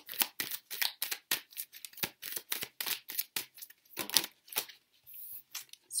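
Tarot deck being shuffled by hand: a rapid, irregular run of crisp snaps and flicks of card stock, several a second.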